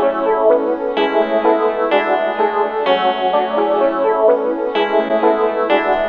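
Trap-beat melody loop playing back from a DAW: layered software-instrument guitar parts, a plucked 12-string patch and a clean electric guitar sound with effects, with no drums or bass. The notes change about once a second.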